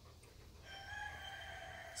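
A faint, long pitched call from a distant bird. It starts about half a second in and is held for about a second and a half.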